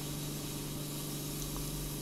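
Ear microsuction machine drawing air through a suction tube in the ear canal: a steady hiss with a low hum underneath.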